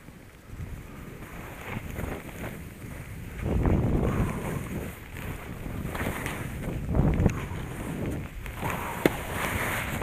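Skis hissing and scraping through chopped-up snow, with wind buffeting the camera microphone. It grows louder about three seconds in and comes in surges every second or two, with a sharp click near the end.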